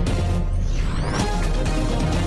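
TV news intro theme music with a steady, heavy bass, and a rising synthetic sweep about half a second in.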